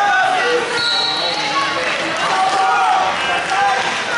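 Several voices calling out and shouting over one another in a large, echoing gym around a wrestling match. About a second in, a high steady tone sounds for roughly a second.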